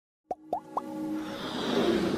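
Animated-intro sound effects: after a brief silence, three quick pops that each sweep upward in pitch, about a quarter second apart, followed by a whoosh that swells steadily louder.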